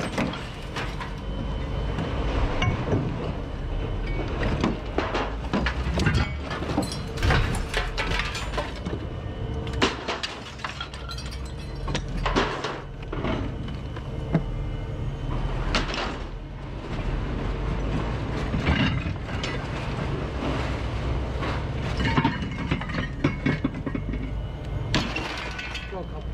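Scrap metal being thrown onto a scrap pile: repeated clanks and crashes of metal on metal at irregular intervals, over a steady low drone.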